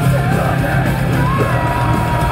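Live metal band playing loud, with distorted guitars, bass and drums under a vocalist's shouted vocals.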